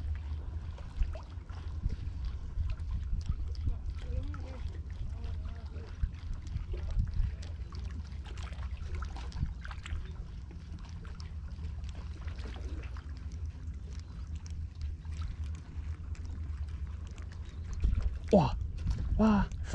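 Wind rumbling steadily on the microphone, with faint irregular ticks and clicks from a spinning reel being cranked as a lure is retrieved.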